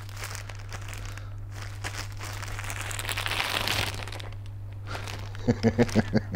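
Plastic packaging and a paper envelope crinkling and rustling as a parcel is opened and its contents unwrapped, loudest in the middle. A short laugh near the end.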